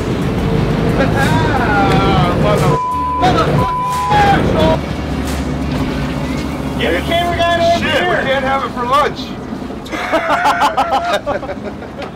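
Men's voices on a boat deck over the steady low rumble of the boat's engine. About three seconds in, a steady beep in two short pieces replaces the talk, a censor bleep over a word.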